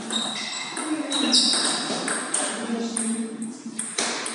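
Celluloid-type table tennis ball being struck back and forth in a rally, a quick run of sharp clicks off the bats and table, each with a short high ringing ping. Voices in the background.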